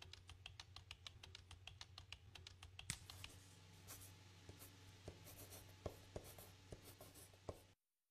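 Faint keystrokes on a laptop keyboard: quick, fairly even clicks for about three seconds, then slower, scattered taps.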